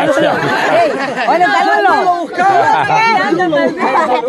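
Several people talking at once: lively overlapping chatter.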